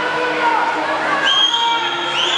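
Spectators shouting and cheering on swimmers in a race, several long high-pitched shouts held over a constant crowd din.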